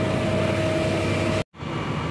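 Tractor engine running at a steady idle, a low hum with a steady whine above it; the sound cuts out for an instant about one and a half seconds in and picks up again.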